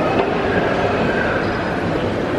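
Steady background noise of a busy shopping mall: a continuous rumble and hubbub with no single event standing out.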